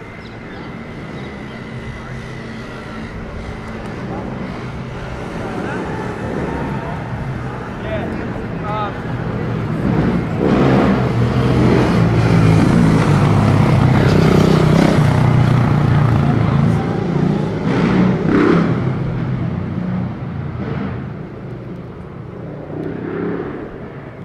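Motorcycle engine passing close by: a low rumble that grows louder over several seconds, is loudest around the middle, then fades away.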